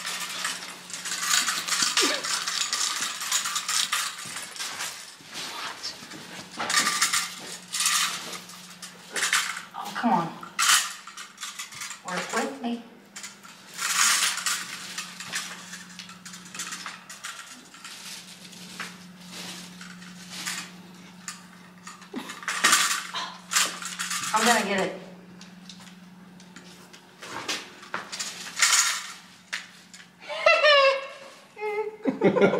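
A handheld reacher-grabber tool clicking and clanking against a metal fire extinguisher on a hard floor as it is poked and prodded: scattered sharp metallic clanks and rattles, with a faint steady hum underneath.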